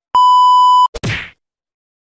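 TV colour-bar test-pattern tone: one steady beep at a single pitch lasting under a second, cut off abruptly. A short burst of noise follows just after a second in.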